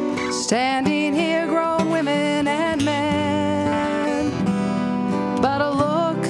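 A woman singing a slow song, accompanying herself on acoustic guitar.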